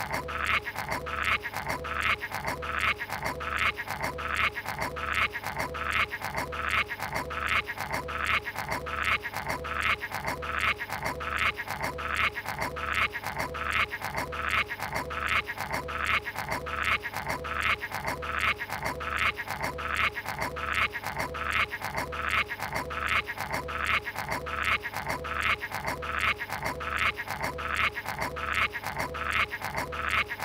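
Cartoon sound effect of a character chewing and gnawing on a book, a short loop repeating evenly about twice a second.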